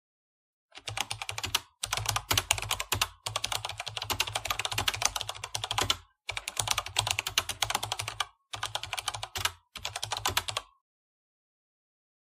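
Rapid computer-keyboard typing sound effect, in about six runs of one to three seconds with short breaks between them. It accompanies text being typed out on screen and stops about a second before the end.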